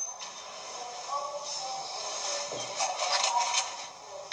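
Faint background voices and music at low level, with no clear nearby speech.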